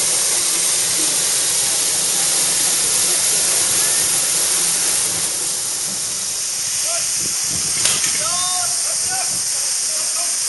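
A steady, loud high-pitched hiss runs throughout, with faint voices and a single sharp click about eight seconds in.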